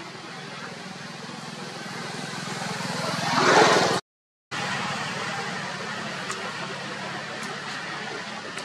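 A motor vehicle's engine running steadily, growing louder to a noisy peak about three and a half seconds in, as if passing close by. The sound cuts out completely for about half a second just after that, then the steady hum resumes.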